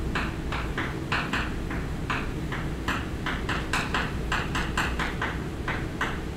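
Chalk writing on a blackboard: a quick, irregular run of short taps and scrapes, about three or four strokes a second, over a steady low room hum.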